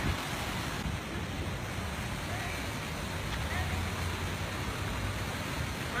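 Steady outdoor background noise: a low, even hum under a constant hiss, with no distinct events.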